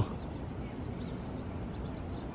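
Outdoor ambience: a steady low background noise with a few faint, high bird chirps about a second in.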